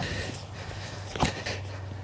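A large folding solar panel's last section laid flat on grass: faint handling with one short knock about a second in, over a faint steady low hum.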